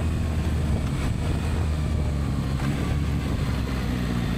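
Yamaha MT-09 Y-AMT's 890 cc three-cylinder CP3 engine running steadily at low revs as the bike slows, heard on board with wind rush; the automated gearbox is being brought down toward first.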